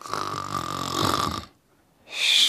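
A comic cartoon snore: one drawn-out snore with a steady high note over low rattling, about a second and a half long, that cuts off suddenly.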